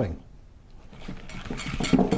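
Wire whisk beating cream cheese and cream in a ceramic bowl, the wires scraping and clicking against the bowl; faint at first, growing louder in the second half.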